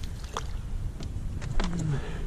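Steady low wind rumble on an action-camera microphone, with a few faint splashes and clicks as a hooked fish thrashes at the surface beside a fishing kayak. A short, falling groan of a man's voice comes near the end.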